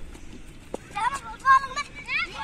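Two sharp knocks in the first second, then children shouting high-pitched calls to each other, loudest a little past the middle.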